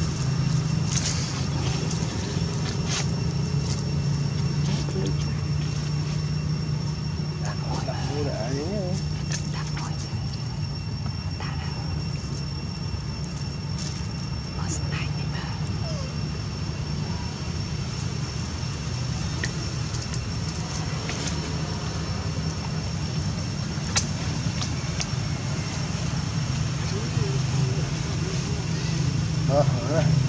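A steady low hum like a running engine, with faint voices talking now and then, about eight seconds in and again near the end.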